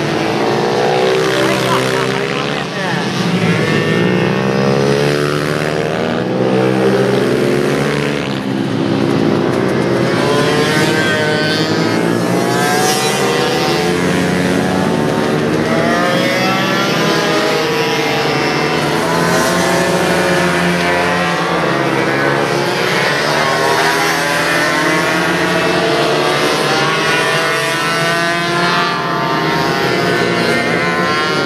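Several small racing minibikes' engines run hard around the track together, their overlapping notes rising and falling as the riders rev out and back off through the corners.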